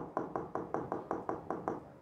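A quick run of taps on an interactive whiteboard's touchscreen, about five a second, growing fainter: repeated presses of the undo control wiping out the last pen strokes.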